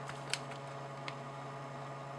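A steady low electrical hum with three light clicks from working a computer, the loudest about a third of a second in.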